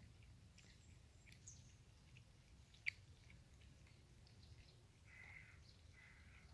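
Near silence with faint sounds of cats eating wet food: scattered soft clicks and smacks, and one sharp click about three seconds in.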